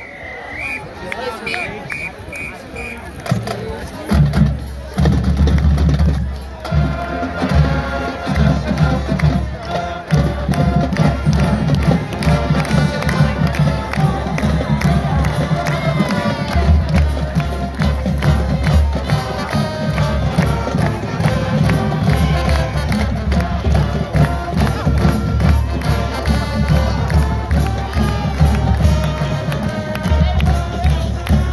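High school marching band playing a school fight song with drums and brass, loud and rhythmic, while the crowd in the stands cheers. A few short high whistle blasts sound first, and the drums come in about four seconds in.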